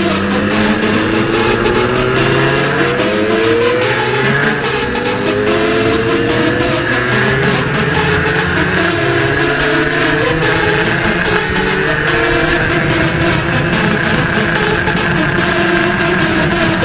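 Supermoto motorcycle engine accelerating, its revs climbing in several steps with a gear change between each in the first half. Electronic dance music with a steady beat plays over it throughout.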